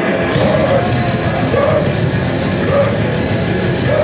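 Grindcore band playing live and loud: distorted electric guitar, bass and drums in a dense, steady wall of sound, the top end brightening suddenly just after the start.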